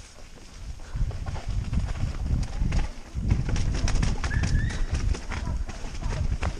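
Mountain bike riding fast down a rough, muddy trail: irregular rattling and knocking over the bumps, with wind buffeting the helmet camera's microphone. A brief squeak sounds about four seconds in.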